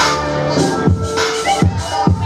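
Hip-hop dance music with a steady, heavy kick-drum beat.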